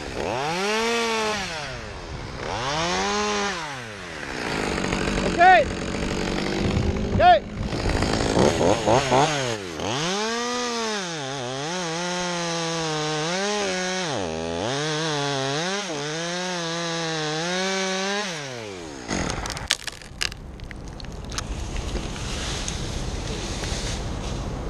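Top-handle chainsaw revving twice for short side cuts, then cutting through the trunk for about eight seconds, its engine pitch sagging and recovering under load. The engine sound ends about 19 s in, and a few sharp cracks follow.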